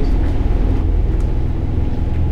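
A loud, steady low rumble with no distinct events in it.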